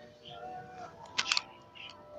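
A quick cluster of three or four sharp clicks a little past a second in, over a background of distant voices.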